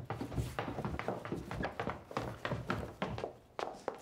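Quick footsteps going down a wooden staircase: a run of short knocks, about four or five a second.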